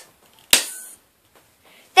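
A small spring-loaded Nerf pistol firing once about half a second in: a single sharp snap with a brief fading tail. It is a botched shot.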